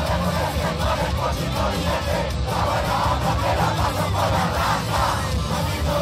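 Punk band playing live at full volume, with a crowd shouting and chanting along over the drums and guitars.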